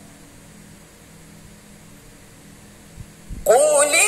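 Steady low electrical hum from the sound system in a pause of a woman's melodic Quran recitation. A couple of soft low thumps come about three seconds in, and her recitation resumes loudly just before the end on a note that rises and then holds.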